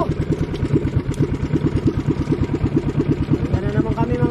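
Small engine of a motorised outrigger boat (bangka) running steadily under way, an even, rapid putter.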